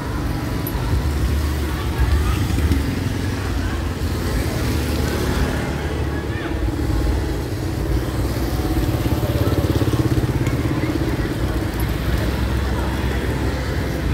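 Street traffic on a wet road: motorbike and car engines passing, with a steady low rumble.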